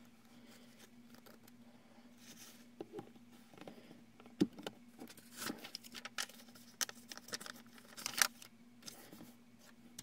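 Quiet tabletop handling noises: scattered light clicks and knocks as a small plastic spray bottle is handled and set down, with brief rustles of a paper towel and paper, over a faint steady hum.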